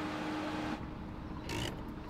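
The tail of a held music note fades out, then a low, faint rumble of the Mazda hatchback's engine inside the car's cabin, with a brief click-like noise about one and a half seconds in.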